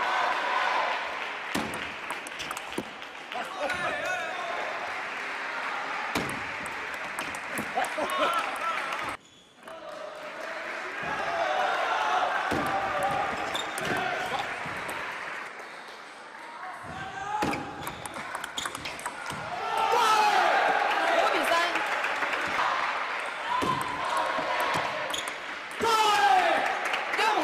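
Table tennis rallies: the celluloid-style plastic ball clicking sharply off the rubber bats and bouncing on the table, in quick runs of hits with pauses between points, over voices in a large hall.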